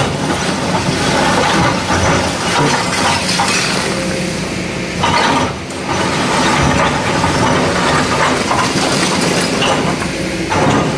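Kobelco hydraulic excavator's diesel engine running steadily while its steel bucket digs into broken stone, rocks clattering, scraping and cracking against the bucket and each other, with a brief lull about halfway.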